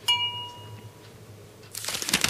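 A single bright clink that rings for under a second, then a brief rattle near the end: paintbrushes being put away into and taken from a hard brush container.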